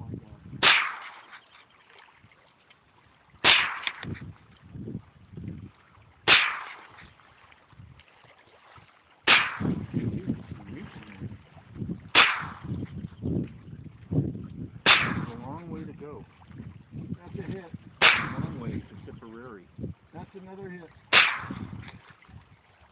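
A .22LR AR-15-style rifle firing eight single, slow aimed shots, about one every three seconds, each a short sharp report.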